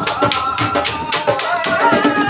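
Dhol drums played together in a fast, dense rhythm, deep bass strokes under rapid sharp strokes on the higher head.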